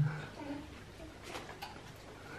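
A quiet room during a meal: a short low hum at the very start, then only faint eating noises with a few soft clicks about a second and a half in.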